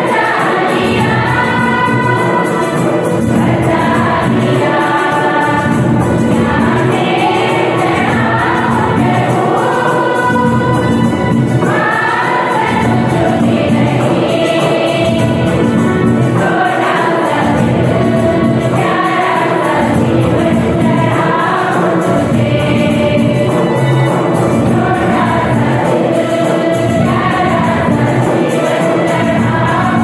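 Church choir singing a Christian hymn together, accompanied by an electronic keyboard; the singing runs without a break.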